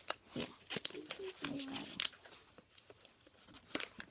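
Wrapping paper crinkling and tearing as it is pulled off a present by hand, in a run of short rustles.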